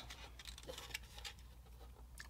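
Near silence: quiet room tone with a low steady hum and a few faint taps of hands handling small parts on a wooden workbench.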